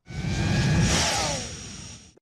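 Broadcast transition sound effect: a whoosh with a low rumble that swells in quickly, peaks about a second in and fades away, with a tone falling in pitch through it.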